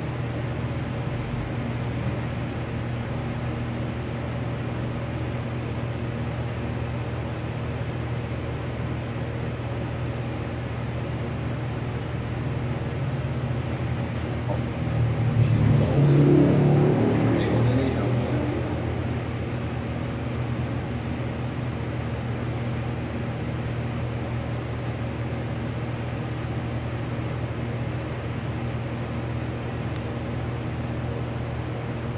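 A steady low mechanical hum, with a louder passing-vehicle sound swelling and fading about halfway through.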